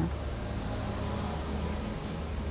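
Steady low hum and rumble of background room tone, with no distinct events.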